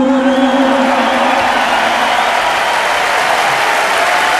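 A large live audience applauding as the song's final held chord fades out in the first second.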